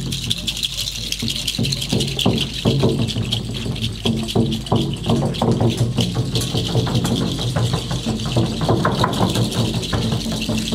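Haida ceremonial song: voices singing together over a rattle shaken fast and continuously.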